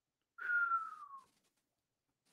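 A man whistling one short note that slides down in pitch.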